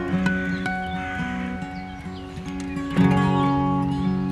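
Acoustic guitar playing an instrumental passage, with a louder strum about three seconds in. Birds chirp faintly in the background.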